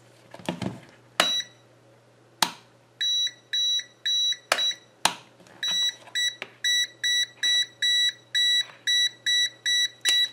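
Venlab VM-600A digital multimeter's non-contact voltage (NCV) detector beeping as it is held against a power strip, signalling live mains voltage. A few sharp clicks come first, then from about three seconds in a high electronic beep repeats about twice a second.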